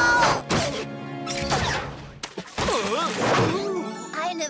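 Cartoon soundtrack music with two sudden crashing impact sound effects, about half a second and a second and a half in, as the falling characters land.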